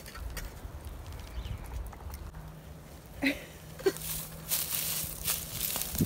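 Molten lead poured from a cast-iron skillet into a steel muffin tin, with a few short clinks and a spell of hissing scrape from about four seconds in, over a steady low rumble of wind on the microphone.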